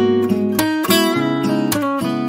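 Instrumental passage of a pop ballad: chords strummed on an acoustic guitar, a fresh strum about every half second.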